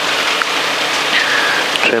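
Steady rushing hiss from a light aircraft idling on the ground, its engine running and propeller turning before takeoff.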